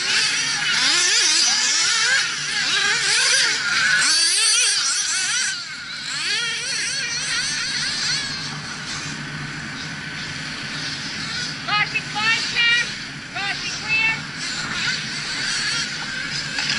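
Small nitro engines of RC racing buggies revving high and winding up and down as the cars race, several at once and overlapping. They fade after about six seconds, and short revs come back near the end.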